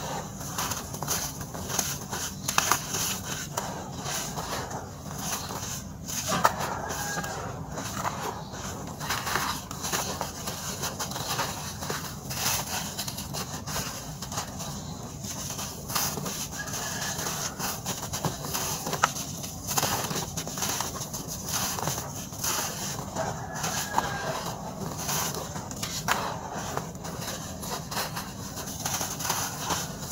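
Chunks of dry red dirt crushed and crumbled by hand in a plastic tub: a steady run of gritty crackles and crunches as lumps break and powder sifts down.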